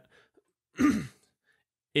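A man clears his throat once, a short sound with a falling pitch a little under a second in.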